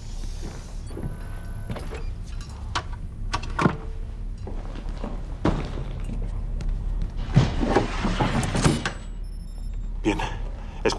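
Knocks and clunks of a capsule's pass-through hatch being worked and a bag being handled, louder and busier about three-quarters of the way through, over a steady low hum. Short electronic beeps sound near the start and again near the end.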